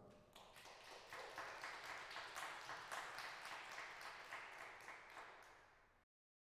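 Audience applauding, faint, starting about half a second in and thinning out toward the end before cutting off suddenly.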